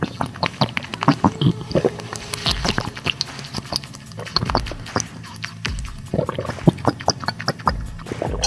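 Drinking sound effects: a fast, irregular run of gulps and wet swallowing clicks, as of a drink being sucked through a straw and swallowed.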